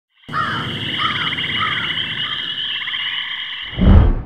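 A chorus of calling frogs: a steady pulsing high trill with a short rising-and-falling call repeated about every half second, four times. Near the end it gives way to a loud low thump.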